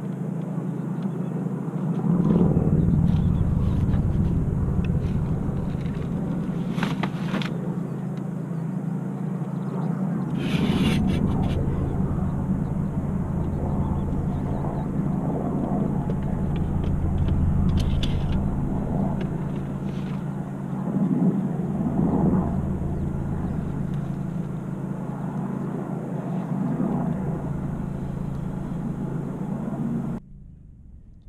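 Outdoor riverbank ambience: a steady low hum with slow swelling rumbles, and a few brief clicks and rattles.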